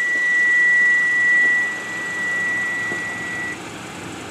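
A single steady, high-pitched electronic beep held without a break, cutting off about three and a half seconds in, over steady background noise.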